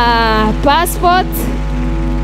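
A voice speaking in short phrases over a steady, sustained background music chord.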